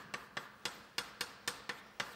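Chalk tapping and clicking against a blackboard while formulas are written: a quick, uneven run of sharp taps, about four a second.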